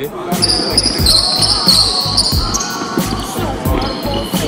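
Basketball shoes squeaking and feet tapping on a hardwood court during quick agility-ladder footwork drills, with short high squeals and sharp thuds, over background music with a steady beat.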